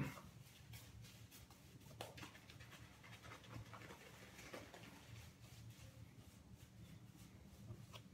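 Near silence with faint swishing and soft scratching of a shaving brush working soap lather over the face and beard, broken by a few faint clicks.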